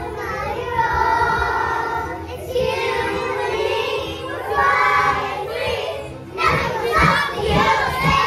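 A group of young children singing together over a recorded backing track.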